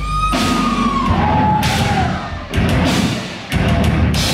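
Deathcore band playing live: heavy guitar, bass and drum hits in a stop-start breakdown, with short breaks between the hits. A high note slides downward over about the first second.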